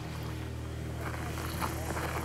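A steady low hum, with faint indistinct voices in the second half.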